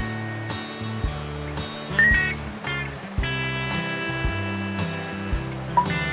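Background music with a steady beat, with a brief bright ringing tone about two seconds in.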